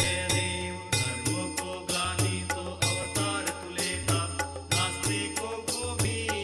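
Devotional aarti music: chant-like singing over a steady beat of percussion strikes, about two a second.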